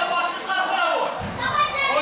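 Several people's voices shouting and calling out over one another, one higher-pitched voice rising above the rest near the end.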